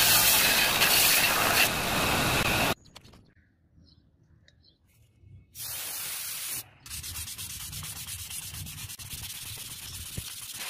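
Belt grinder sanding a steel blade, loud and steady, cutting off suddenly about three seconds in. After a quiet gap comes a hiss of aerosol spray lasting about a second, then steady hand-rubbing of 400-grit sandpaper on the steel blade.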